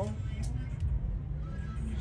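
Steady low rumble of background noise, with faint voices briefly in the background.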